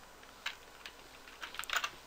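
Faint computer keyboard clicks: a few single clicks spaced apart, then a quick run of them near the end.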